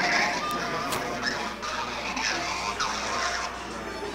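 Many mobile phones in a room ringing at once with assorted ringtones, each announcing an incoming automated call, over a murmur of voices.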